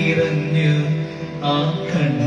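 A man singing slow, held notes into a microphone over electronic keyboard accompaniment, with a brief dip about a second in before a new phrase begins.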